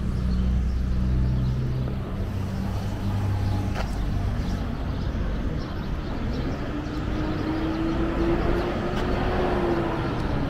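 City street traffic noise. A vehicle engine hums close by for the first two seconds, and a whine rises slowly in pitch over the last few seconds.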